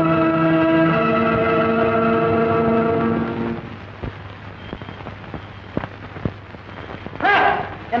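Film background score of sustained organ-like chords that shift in pitch, then fade out about three and a half seconds in. A quieter stretch with a few faint knocks follows, and a loud, brief voice cries out near the end.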